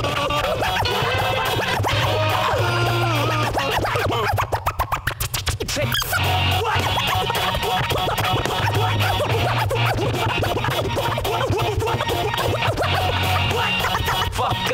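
Turntable scratching over a beat with a steady bass line: records cut back and forth in quick pitch glides, with a rapid chopped stutter run about four and a half seconds in, lasting about a second and a half.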